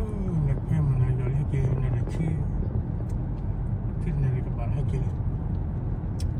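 Steady road and engine noise of a car driving, heard from inside the cabin.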